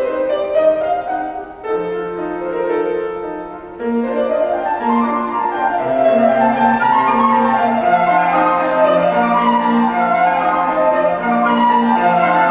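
Flute and grand piano playing a classical sonata movement: the piano plays alone at first, and the flute comes in with the melody about four seconds in.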